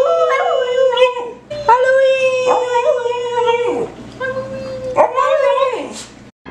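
Small black-and-tan dog howling: three long held howls, each sliding down in pitch at its end.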